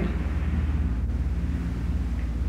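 Steady low hum with a faint hiss: the background noise of a 1950s reel-to-reel tape recording.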